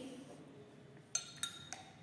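Metal teaspoon clinking against a glass beaker while crushed onion is scooped in: three short, ringing clinks about a second apart from each other, starting just after a quiet first second.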